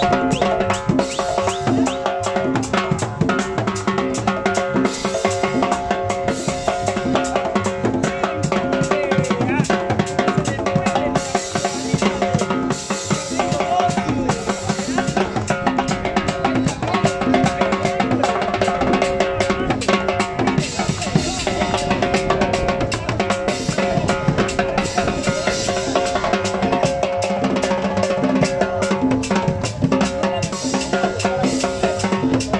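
Live band dance music, with a drum kit keeping a steady beat under sustained melodic tones, playing without a break.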